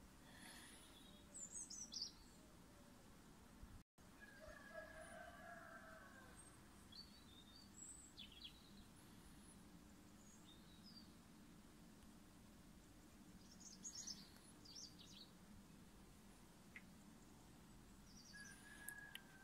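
Near silence: faint room or outdoor tone with a low steady hum, broken by a few faint short high chirps and one faint drawn-out call about four seconds in.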